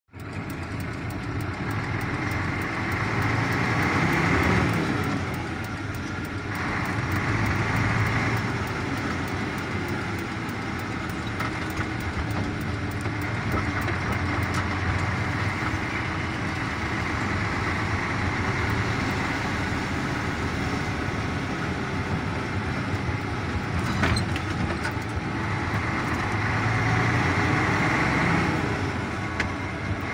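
Engine and road noise heard on board a moving vehicle, continuous and swelling louder a few times, about four seconds in, around eight seconds and near the end. A single sharp click sounds a little before the end.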